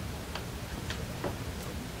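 Steady room hum with four faint, irregularly spaced clicks or taps.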